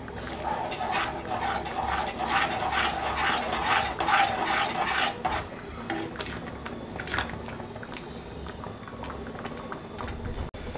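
A steel spoon stirs thick rava pongal in a black iron kadai, scraping against the pan at about three strokes a second. About five seconds in the stirring stops, leaving only a few scattered clinks.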